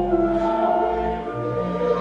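A hymn sung with church organ accompaniment, the organ holding long sustained chords under the voices.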